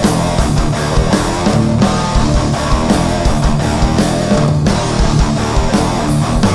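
Live heavy rock band playing: distorted electric guitars and bass over a steady, busy drum beat with frequent cymbal and snare hits.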